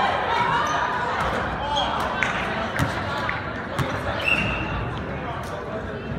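Basketball bouncing on a hardwood gym floor at intervals during play, over a murmur of players' and spectators' voices in a large, echoing gymnasium.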